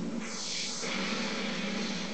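A hiss lasting about two seconds, starting just after the beginning, over a steady low hum.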